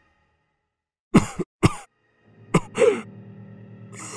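A man's voice acting out two short, harsh coughs about a second in, voicing a dying tiger. A short gasp follows as a low, steady music drone comes in a little past halfway.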